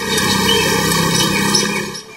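Steady road noise from motorcycles riding past. It starts abruptly and stops at the end.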